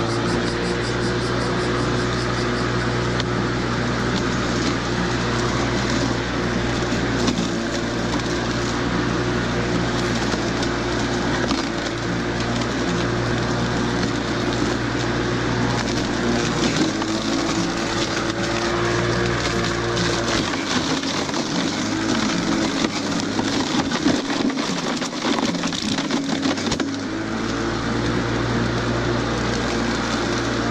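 Battery-powered cordless lawn mower running steadily, its electric motor humming and its blade cutting dry grass and weeds, with scattered ticks from debris. Past the middle the low hum drops away for several seconds, then returns.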